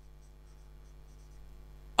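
Faint sound of a marker pen writing on a whiteboard, over a low steady hum.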